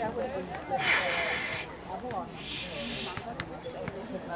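Low background chatter of spectators' voices, with two hissing noises: a louder one about a second in lasting under a second, and a weaker one a little later.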